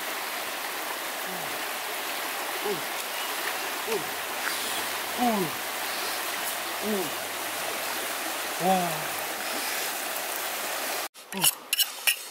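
River water flowing steadily, with a short falling vocal call repeated about eight times at uneven intervals of one to two seconds. Near the end, after a sudden cut, quick scraping strokes of a knife blade rubbed along an axe head.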